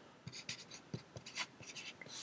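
Felt-tip marker drawing on paper: a run of faint, short scratchy pen strokes.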